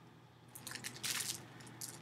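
Soft rustling and crinkling of a package being handled, in a few short bursts starting about half a second in and once more near the end.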